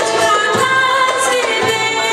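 A woman singing a Turkish art music (Türk sanat müziği) song at a microphone, with instrumental accompaniment.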